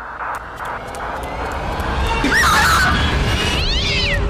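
Horror-film suspense score: a pulsing beat fades into a swelling low rumble, pierced by a shrill cry about two seconds in and a falling screech near the end.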